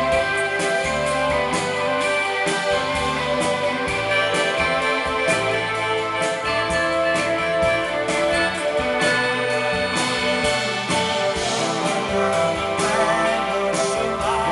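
An indie pop band playing live through a club PA, in an instrumental passage with no singing: electric guitar and keyboards over a steady drum-kit beat.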